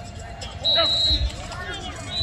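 Voices of players and coaches talking on a football practice field, with a short, steady high tone lasting about half a second near the middle.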